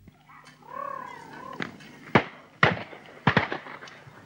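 A short wavering, whine-like call, then a run of five sharp shotgun cracks about half a second apart, the shots of guns firing at driven pheasants.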